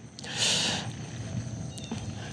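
A short, sharp breath of about half a second, a hiss-like snort or sniff, followed by faint low background noise.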